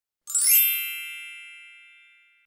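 A single bright chime, a bell-like ding, sounding about a quarter second in. It rings with several steady high tones and fades away over about two seconds.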